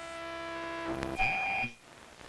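Intro of an electronic future-bass track: a held synth chord swells in level, then a bright, beep-like high synth tone sounds for about half a second past the one-second mark before the music drops away.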